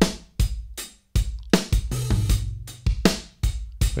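Recorded acoustic drum kit playing a groove of kick, snare, hi-hat and cymbal strikes, the dry close-miked kit blended with simulated Sound City Studios room microphones. There is a brief gap about a second in.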